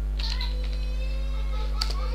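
A steady low electrical hum, with faint, high, wavering tones in the background.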